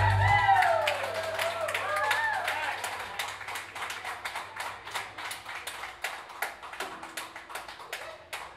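The band's last held note cuts off just after the start. Then a small crowd claps, with a few whoops and cheers in the first couple of seconds, and the clapping thins out and fades toward the end.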